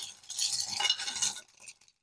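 A hand rummaging through a glass dish heaped with small metal charms, the pieces clinking and rattling against each other and the glass; the clatter dies away after about a second and a half.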